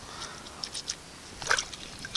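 Small wet splashes and squishes of hands working a wad of crushed yucca leaf in shallow creek water, the loudest splash about a second and a half in, over a faint steady hiss of the water.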